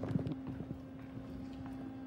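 Footsteps and phone handling knocks on a hard floor in the first second, over a steady low hum that runs throughout.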